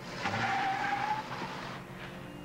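A car pulling away hard: engine noise with a tyre squeal for about a second, dying down before the end.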